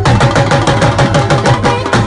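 Live folk music led by two double-headed dhol drums played with sticks in a fast, dense, even rhythm, the bass strokes dropping in pitch. A held melodic note sounds above the drumming.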